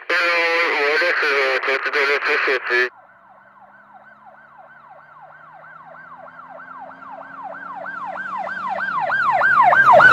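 A siren sounding a fast rising-and-falling yelp, about four cycles a second, growing steadily louder as it draws near, with a low steady hum beneath. It follows about three seconds of a loud, wavering sound at the start.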